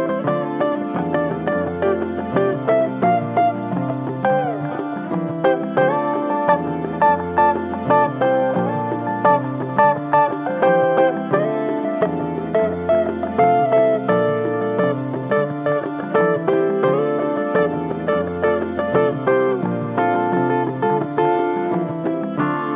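Archtop electric guitar played over a repeating low ostinato figure that comes round about every five and a half seconds, with picked melodic lines on top.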